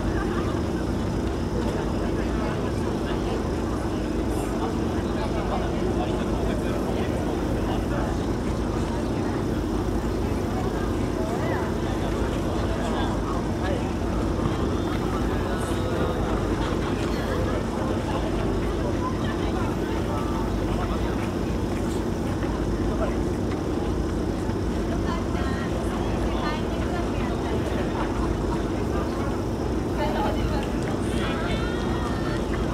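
Indistinct chatter from a waiting crowd over a steady low hum, unbroken throughout.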